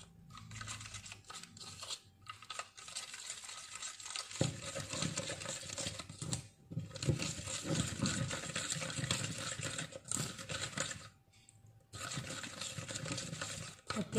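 White plastic spoon stirring and scraping a wet, gritty mix of granulated sugar, citrus juice and dish soap around a plastic bowl: a crunchy scratching with a few brief pauses, the longest about a second near the end.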